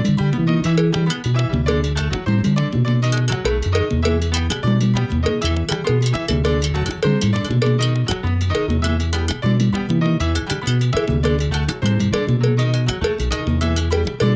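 Salsa band recording in its bongo bell (campana) solo: the bell plays fast, off-beat syncopated strokes over the band.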